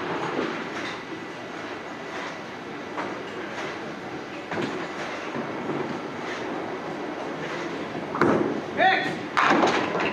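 Duckpin ball rolling down a wooden lane, with a sudden loud crash of pins about eight seconds in. Rumbling bowling-alley noise and background voices run underneath.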